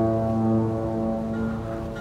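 A ship's horn giving one long, low, steady blast that fades near the end.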